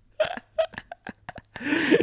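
Two men laughing, the laughter tapering off into a string of short, separate breathy bursts.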